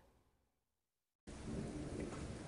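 About a second of dead silence, then a steady low rumble and hiss starts abruptly: handling noise as a stack of trading cards is held and shuffled close to the microphone.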